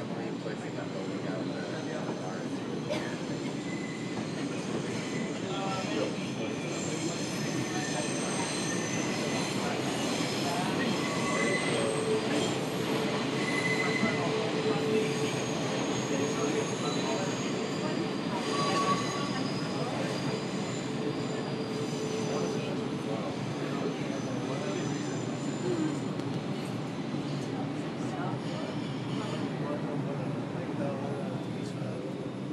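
R142 subway car running through a tunnel, heard from inside the car: a steady rumble of wheels and running gear, with thin, high wheel squeals that come and go over it.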